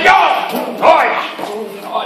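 Mostly a man's voice, drawn-out words of praise to a dog, with a few faint knocks underneath.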